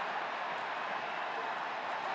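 Steady crowd noise from stadium spectators, an even hiss-like hum with no single voice standing out.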